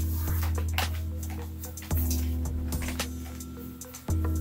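Background music: a deep bass note struck about every two seconds and left to fade, with light clicking percussion over it.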